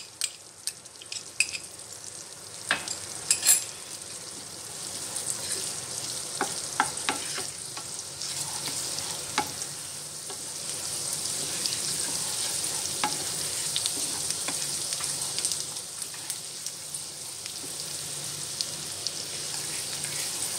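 Garlic and green chillies sizzling in hot butter and oil in a frying pan, stirred with a wooden spatula that taps and scrapes against the pan. There are sharp taps in the first few seconds, and the sizzle grows louder after that.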